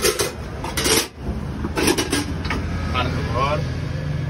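A metal utensil clattering and scraping in a steel bowl as pasta is mixed, in a few short bursts, over a steady low hum.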